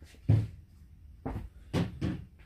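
Three dull knocks of plastic bottles being shifted in a cardboard box, the first and loudest about a quarter of a second in, two lighter ones near the end.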